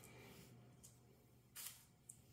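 Near silence with a faint tick and then one small sharp click: a metal snap stud being set into a punched hole in a leather belt lying on a granite slab.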